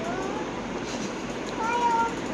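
A small child's high-pitched, wordless whining: a short gliding call just after the start, then a longer, louder, steady one in the last half second.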